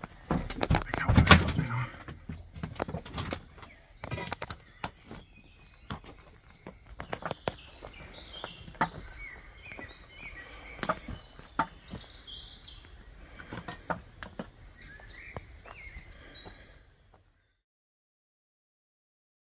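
Camera rubbing against clothing for the first couple of seconds, then scattered footsteps and knocks on brick rubble and debris, with small birds singing in the background from about six seconds in. The sound cuts off abruptly near the end.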